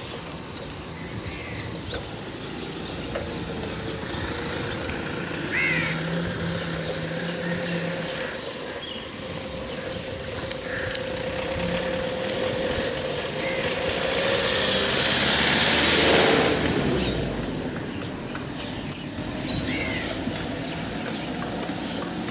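Street sounds: a steady hum with a vehicle passing, swelling and fading about two-thirds of the way through. Scattered short bird calls and a few sharp clicks.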